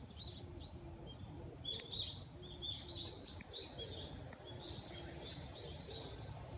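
Small bird chirping repeatedly in short, high notes, over a low hum from honeybees swarming on an open hive frame.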